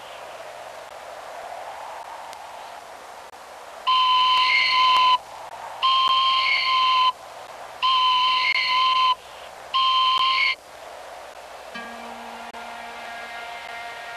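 Hand-held wooden whistle blown in four long, steady blasts, each about a second, calling a trained hawk back. Soft music comes in near the end.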